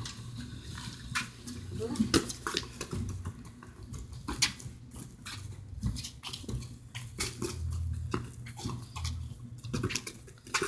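A soccer ball being kicked and dribbled on concrete, with shoes scuffing the ground: a run of short, sharp knocks and scrapes at uneven intervals.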